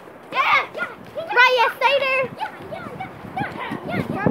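Children shouting and squealing in high voices while play-fighting: two loud, drawn-out cries in the first half, then quieter overlapping voices.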